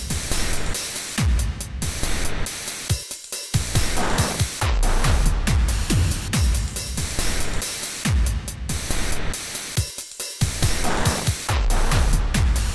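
Dark electro/EBM remix with no vocals: a dense hissing noise layer over heavy bass hits that drop in pitch. The music breaks off briefly twice, about three seconds and ten seconds in.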